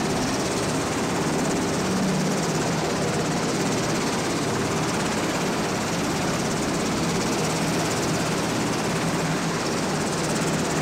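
Sikorsky VH-60N Marine One helicopter running on the ground with its rotor turning: a steady noise of its twin turboshaft engines with fast, even rotor chop.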